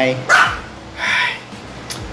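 An excited Yorkshire terrier barking twice, two short barks about a second apart.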